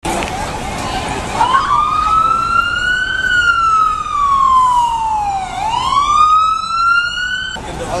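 Emergency vehicle siren wailing over street noise. It rises slowly, falls, then rises again, and cuts off suddenly near the end.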